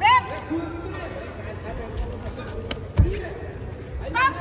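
Short rising shouts from ringside as two amateur boxers grapple in a clinch, with one heavy thud about three seconds in.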